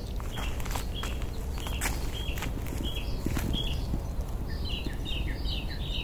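Small songbirds chirping: short high chirps about twice a second, crowding into a quick chatter of many chirps near the end, with a few soft ticks.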